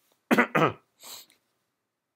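A man coughing twice in quick succession, followed by a short breath.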